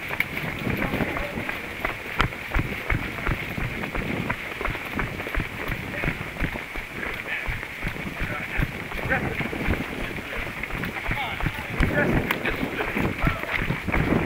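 Running footsteps on dirt ground close to the microphone, with indistinct voices in the background.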